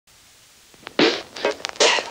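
Intro music starting about a second in with a few sharp, loud percussive hits after a faint hiss.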